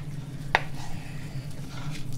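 Kitchen knife working a trout fillet on a plastic cutting board, with one light click about half a second in, over a steady low hum.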